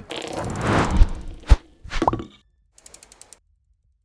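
Outro logo-animation sound effects: a swelling whoosh with two deep hits about half a second apart, a short rising tone, then a quick run of small ticks.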